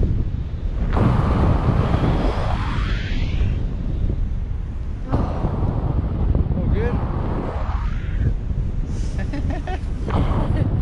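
Wind buffeting the microphone of a tandem paraglider's camera during swinging acrobatic turns. The rush surges suddenly about a second in and again about five seconds in, each time dying away as the swing slows.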